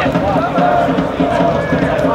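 Football stadium crowd: many voices chanting and shouting together, steady and loud.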